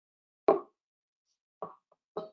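Two short dull knocks, a loud one about half a second in and a softer one near the end, with dead silence between.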